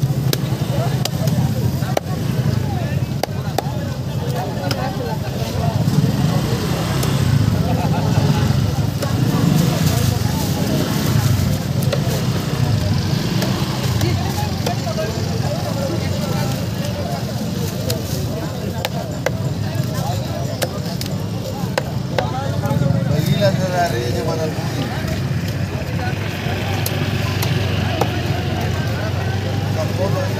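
Heavy knife chopping through mubara (trevally) on a wooden chopping block: repeated sharp knocks at irregular intervals, heard over crowd chatter and a steady low hum.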